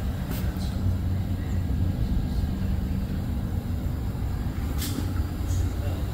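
A steady low mechanical hum, like an engine or motor running, with a couple of faint clicks.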